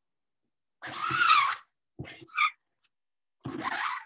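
Thick ink being scraped across a silk screen stretched in an embroidery hoop with a small card squeegee: a scrape lasting about a second, then two short scrapes.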